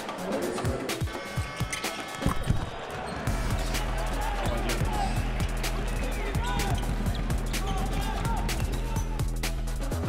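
Basketball game sound of a ball bouncing on the court, with short sharp knocks and brief squeaking glides, over background music whose steady deep bass comes in about three seconds in.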